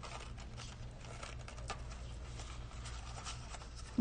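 Faint rustling and small scratches of a sheer ribbon being threaded through a loop and pulled around a cardstock paper box, with scattered light ticks of paper being handled.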